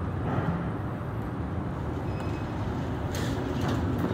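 Elevator arriving and its doors sliding open over a steady low rumble, with a brief faint high chime about two seconds in and a sharp click about three seconds in.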